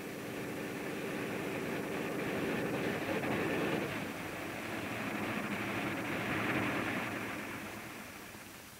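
Piston aircraft engine droning steadily on a takeoff run, growing louder over the first few seconds and fading toward the end.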